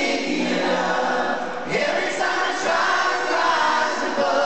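A large concert crowd singing along together with an acoustic guitar performance: many voices at once, heard from inside the audience.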